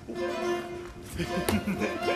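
Instrumental accompaniment from the opera's score, with held notes.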